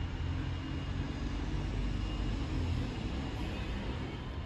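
Steady low rumble of town-centre background, with distant road traffic the main part of it.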